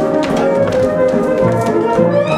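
Lively Polish folk dance music with brass, with the dancers' boots stamping and tapping on the stage floor several times a second.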